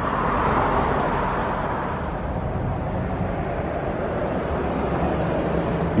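Road traffic noise: a steady rush of passing vehicles with a low rumble, swelling slightly in the first second and then easing off slowly.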